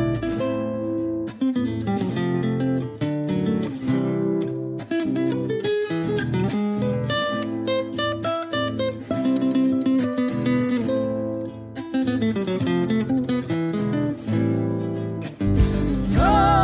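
Instrumental break in a folk song: acoustic guitars picking and strumming a melody over low bass notes, with no singing.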